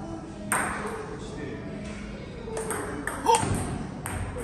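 Celluloid-type table tennis ball clicking off bats and the table: one sharp click about half a second in, then a quick run of clicks in the last second and a half as a rally gets going, the loudest near the end.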